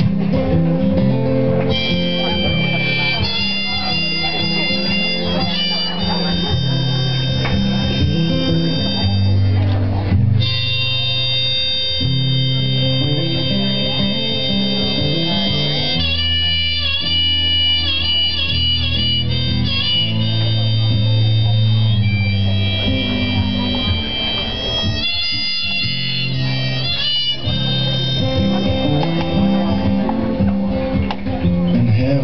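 Live acoustic guitar strummed under a harmonica melody, an instrumental intro before the vocals. The harmonica notes are held, with quick wavering trills about halfway through and again near the end.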